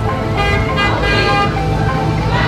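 A car horn sounding for about a second, a steady held honk, with music and a low traffic rumble underneath.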